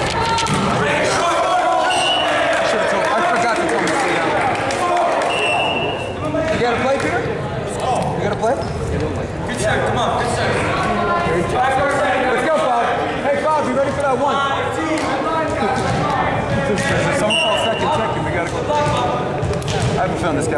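Volleyball being served and hit during a rally in a gymnasium: sharp hand-on-ball smacks and ball bounces, over steady, indistinct chatter and calls from players and onlookers that echo in the hall.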